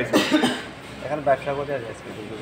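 A cough right at the start, followed by indistinct voice sounds.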